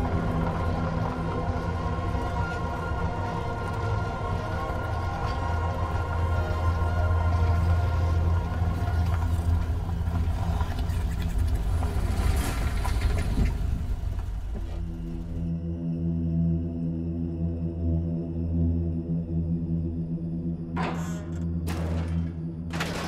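Dark, eerie droning background music over a steady low rumble. About 15 seconds in, the higher layers drop away, leaving a plainer sustained drone, and two short noisy swells rise near the end.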